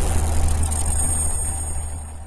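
Cinematic intro sound effect: a deep, steady rumble with a hiss above it, fading out near the end.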